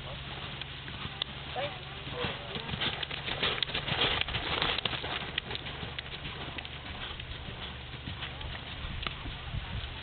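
Appaloosa pony trotting on a dirt arena, its hoofbeats growing louder as it passes close by, about three to five seconds in, over a steady low hum.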